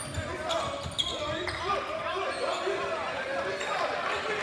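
Basketball dribbled on a hardwood court during play, with sneakers squeaking and players' and spectators' voices in a large gym; one sharp knock about a second in.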